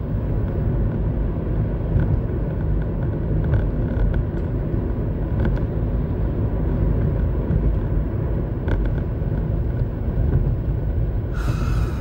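Steady low rumble of a car in motion, heard from inside the cabin, with a few faint ticks.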